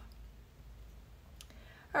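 Quiet room tone with a single small, sharp click about one and a half seconds in.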